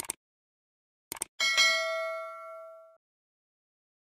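Subscribe-button animation sound effect: a short click at the start, a quick double click about a second in, then a notification-bell ding that rings out and fades over about a second and a half.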